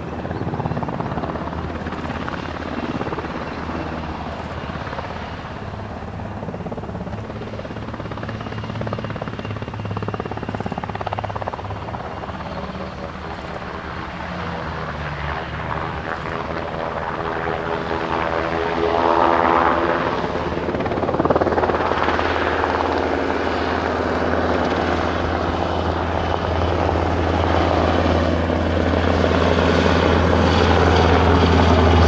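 Sikorsky MH-60S Seahawk helicopter lifting off and flying, its main rotor beating steadily over the whine of its twin turboshaft engines. The sound grows louder over the second half as the helicopter comes closer.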